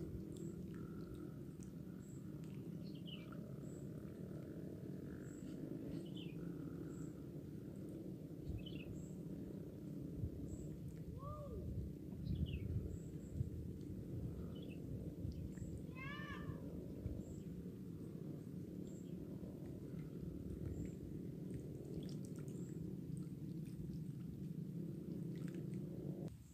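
Quiet outdoor ambience at the water's edge: a steady low rumble, with scattered faint bird chirps, short falling notes a few seconds apart and one fuller call about two-thirds of the way through.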